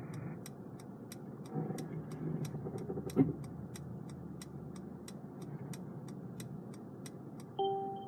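Inside the cabin of a Mercedes-Benz E-Class creeping out of a parking space under its automatic parking assist: a steady ticking, about three ticks a second, over the low hum of the moving car. Near the end a short beep sounds, the acoustic signal that the automatic exit is complete and the driver must take over.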